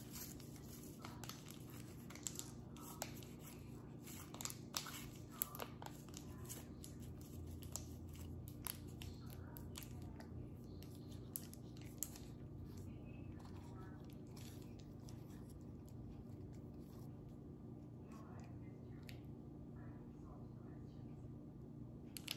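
Plastic bag of modelling clay being handled and pulled open: scattered faint crinkles and crackles, thickest in the first few seconds, over a steady low hum.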